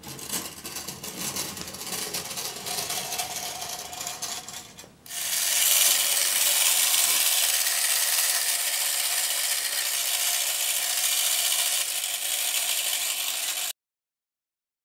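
Clockwork motor of a restored post-war Tri-ang Minic toy double-decker bus running. There is clicking and rattling for the first few seconds, then from about five seconds in a louder, steady whirr as the spring runs down with the wheels spinning free off the table.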